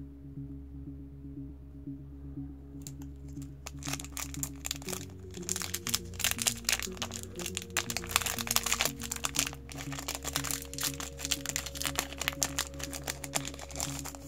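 Foil wrapper of a Yu-Gi-Oh! booster pack crinkling and tearing as it is ripped open and the cards are pulled out, starting about three seconds in, over steady background music.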